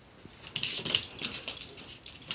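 A schnauzer and a kitten scuffling as they wrestle on a wooden floor, a quick run of scrabbling claws and knocks starting about half a second in.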